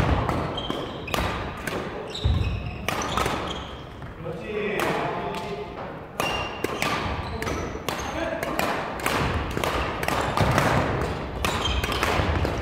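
Badminton doubles rally: repeated sharp racquet strikes on the shuttlecock, with shoe squeaks and footfalls on a wooden gym floor, echoing in a large hall. A player's voice calls out about four to five seconds in.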